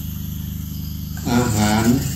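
A man's voice speaking Thai through a microphone, starting a little past halfway, after a pause filled only by a steady low hum.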